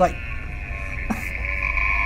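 Bull elk bugling: one long, high-pitched whistle held steady, with a second, lower tone joining in about halfway through, a sound likened to nails on a chalkboard.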